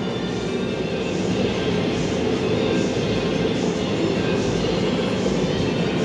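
Steady low-pitched background din with music playing in it; no single event stands out.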